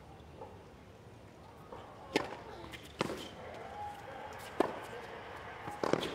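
Tennis ball struck by rackets during a rally: four sharp hits, about one to one and a half seconds apart, over a hushed crowd.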